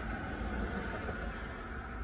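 Steady low rumble and hiss of passing traffic and wind.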